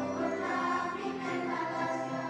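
A children's choir singing in unison, with piano accordion accompaniment.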